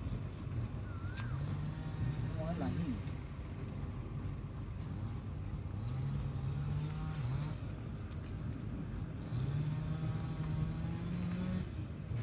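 A motor vehicle's engine humming and rising in pitch three times, each rise ending in a drop, like accelerating through the gears, with faint voices in the background.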